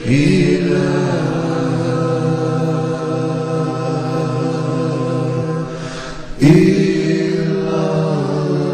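Devotional vocal chanting in long held notes. A phrase swells in at the start, and a new phrase rises in about six and a half seconds in after a brief dip.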